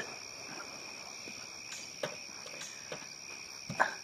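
A steady, high, continuous chorus of insects, likely crickets, trilling without a break. A few faint taps and rustles come as a folded woven cloth is handled and set down.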